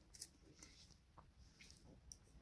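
Near silence with a few faint, light clicks of round-nose pliers working thin silver wire as a loop is rolled.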